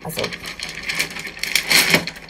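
Glassware being handled on a wooden worktop: continuous scraping and rustling with light clicks, busiest near the end.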